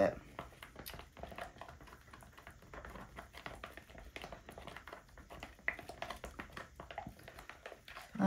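A stirring stick scraping and clicking against the sides of a plastic cup as thick acrylic paint is mixed: a faint, irregular run of small ticks, with a couple of sharper clicks about a second in and near six seconds.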